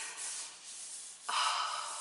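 Soft rustle of tarot cards being slid and turned in the hands, followed about a second in by a breathy, hesitant 'uh'.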